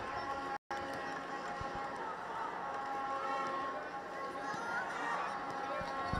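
Horns being blown in a stadium crowd: several steady held tones drone over faint crowd noise. The sound cuts out for an instant about half a second in.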